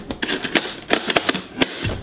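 Hands pressing and working the shut lid of a plastic Craftsman cantilever toolbox, giving a rapid, irregular series of sharp plastic clicks and knocks.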